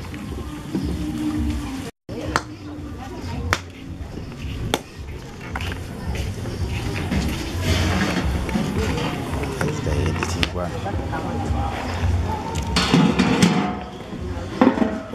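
Background voices and music mixed with a steady low rumble, broken by several sharp knocks; the sound cuts out briefly about two seconds in.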